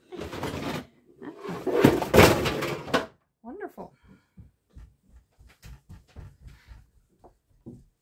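A loud crash and clatter of things knocked over and falling, lasting about a second and a half, followed by a scatter of small light knocks.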